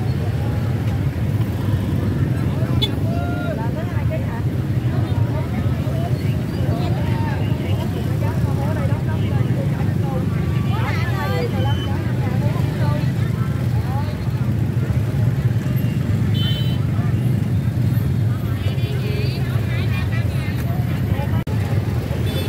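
Busy open-air produce market ambience: a steady low rumble under scattered, indistinct voices of vendors and shoppers talking.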